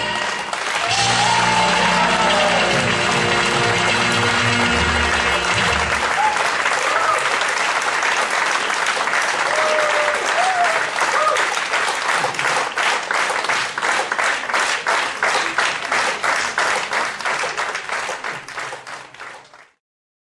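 Audience applauding at the end of a song, with the backing music dying away about six seconds in. The applause then settles into steady rhythmic clapping in time and fades out at the very end.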